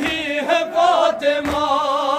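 A group of men chanting a noha, a Shia mourning lament in Urdu, unaccompanied and in unison, in long held notes.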